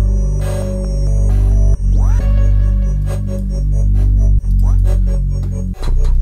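An electronic beat pattern playing back in FL Studio: a heavy, steady bass under synth chords, with a rising sweep about two seconds in. The sound cuts out briefly three times, near two seconds, after four seconds and just before the end, while the pattern is being shaped with the ShaperBox 3 plugin.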